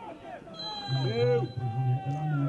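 Men's voices calling out on a football pitch before a corner kick, with one long held shout through the second half.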